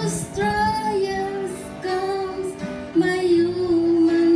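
A group of women singing a sacred song together, holding long notes.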